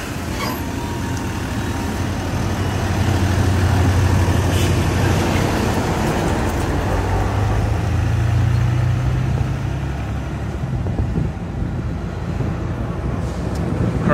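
Mercedes-Benz O530 Citaro city bus with its OM906hLA six-cylinder diesel pulling away from the stop. The engine note rises in pitch as it accelerates about halfway through, then fades as the bus drives off.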